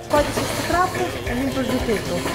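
Mostly speech: brief murmured talk between a man and a woman, over a steady low hum of milking-parlour machinery.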